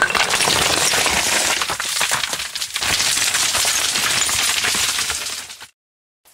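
Loose rock and rubble knocked free and tumbling down a cave shaft: a dense clatter of knocks and cracks that cuts off suddenly near the end.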